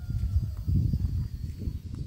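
Walking sounds: footsteps on a paved path with an uneven low rumble of wind and handling on the camera's microphone, and a faint falling whistle near the start.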